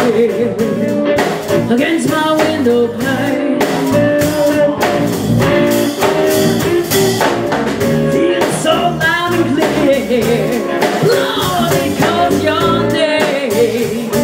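Live blues band: a woman singing lead into a microphone, with wavering held notes over electric guitar and a drum kit.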